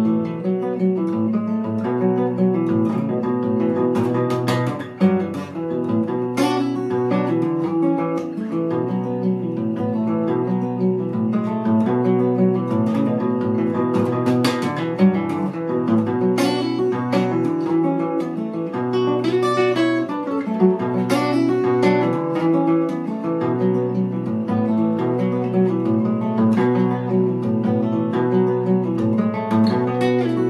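Solo steel-string acoustic guitar, capoed and fingerpicked, playing an instrumental folk piece with a steady repeating bass pattern under the melody.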